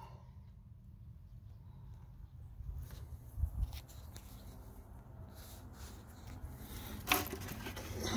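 Quiet outdoor background with no water-flow noise from the repaired sprinkler valve, now that its diaphragm has been replaced and the debris cleared. A couple of soft knocks about three seconds in and a sharper tap near the end.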